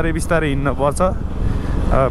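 A man's voice chanting over the steady running noise and wind of a modified Bajaj Pulsar 180 motorcycle on the move. The voice breaks off about a second in, leaving the riding noise on its own for a moment before it starts again.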